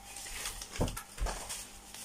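Plastic bubble-wrap packaging rustling as it is handled, with a couple of soft knocks a little under a second in.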